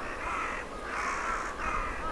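A flock of crows cawing: harsh calls, about two a second, overlapping one another.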